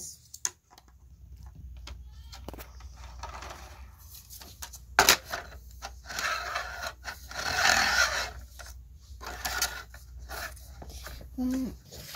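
Plastic toy gears and a paper disc being handled on a plastic drawing-machine base: scattered clicks and knocks, one sharp click about five seconds in, and a rustling scrape for a few seconds after it as the disc is pressed and slid on the turntable. A low steady hum runs underneath.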